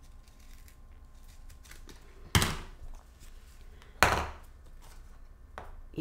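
Two sharp knocks on the work table, about a second and a half apart, while scissors and craft foam are being handled.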